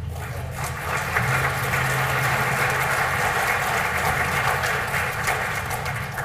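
Audience applauding: a dense patter of clapping that swells about a second in and tapers off near the end.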